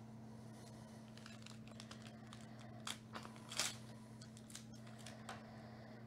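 Foil trading-card pack wrapper crinkling and clicking as it is opened and the cards are pulled out, with a short sharp rip about three and a half seconds in. A steady low electrical hum runs underneath.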